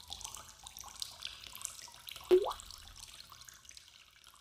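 Water trickling with many small quick drips. About halfway through, one louder water drop plops, its pitch rising, as the sound of a drop falling into water.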